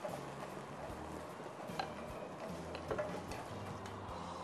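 Chopsticks and a spoon giving scattered, irregular light clicks against a frying pan and a stock pot while onion and beef stir-fry in hot oil, over a faint steady sizzle.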